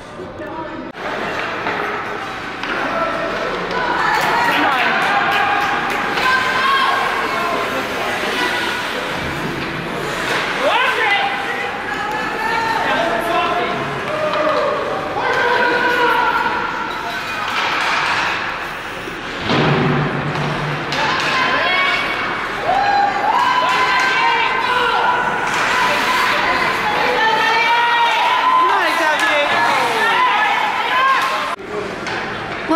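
Youth ice hockey game ambience: many overlapping spectators' voices calling and shouting, without clear words, and thuds and slams from pucks, sticks and players hitting the boards.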